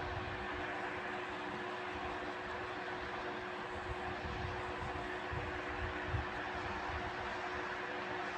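Steady room noise: an even hiss with a constant low hum, and faint soft irregular thumps.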